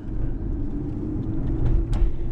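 Car engine and road rumble heard inside the cabin as the car moves slowly in traffic, steady and low, with a short click near the end.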